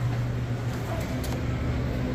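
A steady low hum under an even background hiss, with no distinct knocks or clicks.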